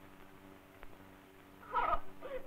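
Steady low background hum with a single faint tick about a second in, then near the end a brief loud pitched cry like a voice or a meow, falling in pitch.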